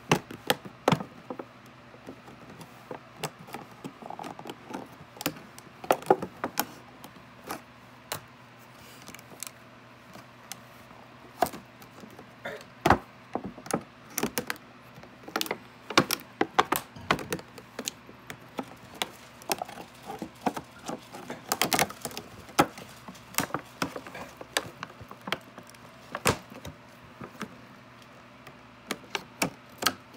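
A toy's clear plastic and cardboard packaging being cut and pulled open by hand: irregular sharp crackles, clicks and small knocks of stiff plastic.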